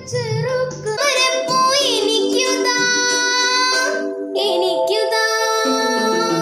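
Children singing solo into a microphone in short excerpts spliced one after another. A boy's voice is first, then after an abrupt change about a second in, other young voices carry long held notes, including a girl's.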